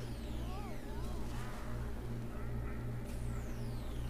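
Cartoon soundtrack from the reanimated episode: a steady low rumble under several falling whooshing sweeps, with a short wavering pitched glide about a second in.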